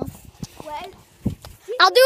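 A high-pitched voice calls out loudly near the end, its pitch bending up and down, after a second or so of faint voices and a muffled knock from the phone being handled.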